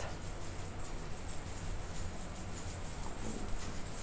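Metal coins on a belly-dance hip scarf jingling softly and continuously in a fast, even shimmer, shaken by a rapid hip-lift shimmy.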